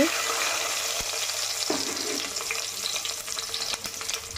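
Whole spices (cumin seeds, cinnamon and star anise) sizzling and crackling in hot mustard oil, a steady hiss that starts suddenly as they hit the oil and eases slightly toward the end.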